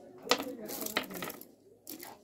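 Small hard objects clinking on a shop counter: two sharp clinks about 0.7 s apart, and a fainter one near the end.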